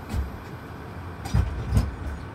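Low, steady rumble inside a parked turboprop airliner's cabin, with three dull thumps, the loudest two close together about a second and a half in.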